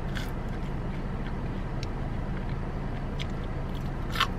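Steady low hum of a car's engine idling, heard from inside the cabin, with a few faint crunches of someone biting and chewing french fries.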